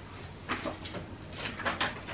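Loose sheets of paper music rustling as they are handled: one short rustle about half a second in and a quicker cluster of rustles near the end, over quiet room tone.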